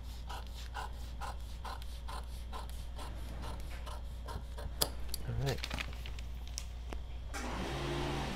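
Scissors cutting through pattern paper: a steady run of snips about two a second, then more irregular cutting clicks. Near the end, a rustle of paper as the cut pieces are handled.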